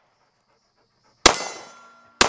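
One shot from a SIG P220 .45 ACP pistol about a second in, after a quiet pause. The report is sharp and dies away over most of a second.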